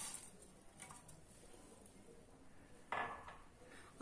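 Milk poured faintly into a steel saucepan of brewing tea, then a single sharp clink of a ceramic mug about three seconds in.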